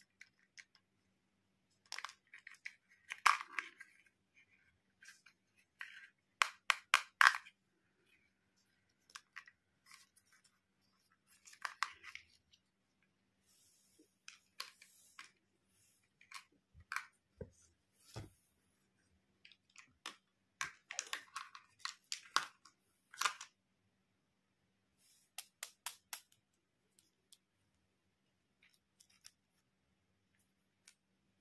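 Hard plastic toy pieces, a pink toy stethoscope and then pink toy eyeglasses, being handled: scattered clicks, taps and light rattles of plastic, some in quick runs of several, with short pauses between.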